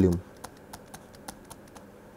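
Light, irregular clicks and taps of a stylus on a pen tablet while handwriting, about four or five a second.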